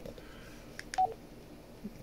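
Baofeng K6 handheld radio's keypad beep: one short beep about halfway through as a key is pressed, with faint button clicks just before it.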